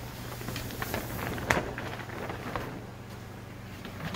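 Light taps and rustles of handling and movement, clustered in the first half, with one sharper tap about one and a half seconds in, over a steady low hum.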